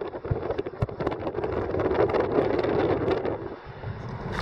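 Car driving along, its road and engine noise heard from inside the cabin, with wind rushing over the microphone and a few light clicks. The noise dips briefly near the end.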